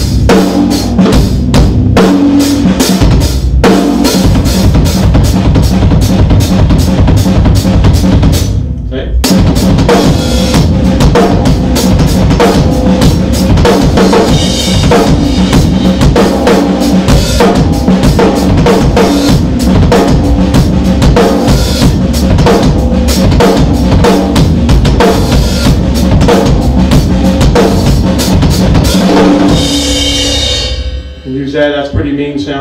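Drum kit played fast and continuously: four-note figures run across the drums with sixteenth notes on the bass drum, the strokes breaking off briefly about nine seconds in before the playing resumes.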